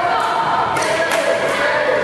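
Badminton doubles rally on a synthetic court mat: court shoes squeal in short held squeaks as the players move, with several sharp racket-on-shuttlecock hits.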